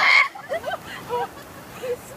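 Young people squealing and laughing as cold surf washes over their bare feet: one loud shriek at the start, then short bursts of laughter.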